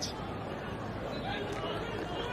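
Steady murmur and chatter of a large football stadium crowd, many voices blending into one background with no single voice standing out.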